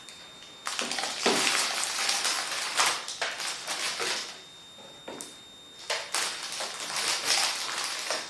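Clear plastic packaging crinkling and rustling as gingerbread pieces are handled and pulled out of it, in two long stretches with a quieter pause of about two seconds between them.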